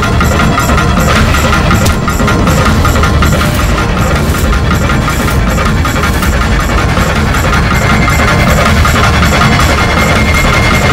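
Loud dramatic background score with a dense, rumbling low end that runs on without a break.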